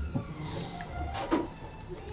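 Quiet chewing of a mouthful of dahi batata puri, with a faint crunch from the crisp puri shell.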